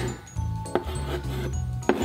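Chalk scraping and tapping on a blackboard as letters are written, with two sharp taps, over background music with a low bass line.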